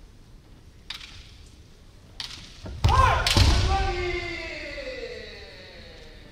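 Two light clacks of bamboo shinai, then about three seconds in a loud stamp-and-strike on the wooden floor and a long, loud kendo kiai shout that falls in pitch as it fades over about two seconds.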